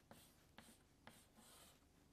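Chalk on a chalkboard: about four faint, short strokes roughly half a second apart, with small ticks, as note stems and beams are drawn.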